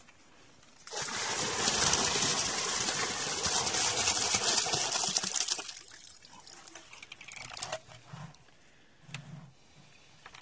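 Water and goldfish poured from a plastic bucket into a garden pond: a steady splashing pour starting about a second in and lasting about five seconds, then a few small drips and splashes.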